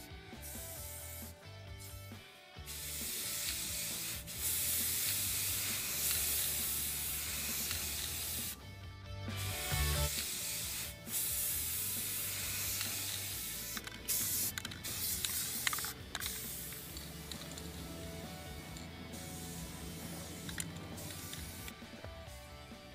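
Aerosol spray paint can hissing in long sweeping passes, broken by short pauses between strokes, as a light coat goes onto a metal table.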